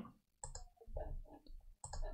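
Faint computer mouse clicks, one about half a second in and another near the end, as a software component is selected and dragged.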